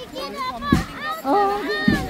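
Young children's high voices talking and calling out in a walking crowd, with two dull thumps.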